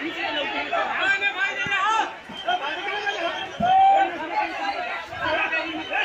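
Several people talking at once close by, overlapping voices in excited chatter, with one louder drawn-out call about four seconds in.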